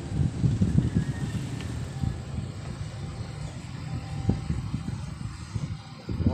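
Moving air buffeting the microphone, likely wind or fan air: a low, uneven rumble that flutters in strength, with a small click about four seconds in.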